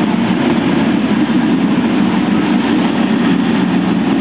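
Steady low roar of a man-made volcano attraction erupting, with natural-gas flames burning over the water.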